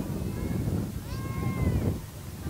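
A high-pitched voice calling out: a brief call at the start, then a longer held call for most of a second near the end, over a low wind rumble on the microphone.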